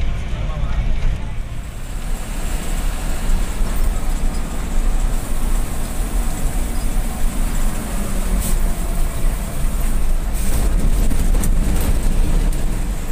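Moving bus heard from inside the cabin: a steady, loud low rumble of engine and road noise, with a few short rattles in the second half.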